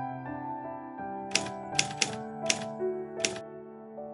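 Soft piano music with five typewriter key clacks laid over it as a typing sound effect, the clacks coming at uneven intervals from about a third of the way in until near the end.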